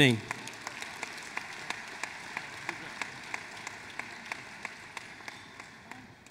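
Audience applauding, with one nearby pair of hands clapping steadily about three times a second; the applause dies down near the end.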